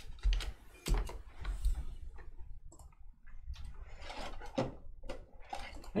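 Irregular light clicks, taps and rustles of trading cards being handled and set down on a desk.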